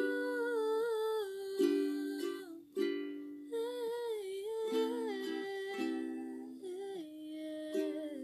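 A soft voice sings a wordless, humming melody of long, slightly wavering notes over gentle plucked-string chords, a home cover of a bedroom-pop song. The accompaniment drops out briefly about a third of the way in, then resumes.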